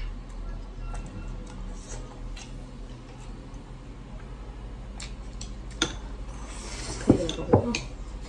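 Wooden chopsticks clicking lightly against a ceramic plate and bowl while someone eats, with a sharper click about six seconds in and two louder, ringing clinks about a second later.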